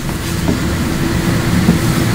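Steady low rumble with a faint constant hum: the room's background noise picked up through the table microphones.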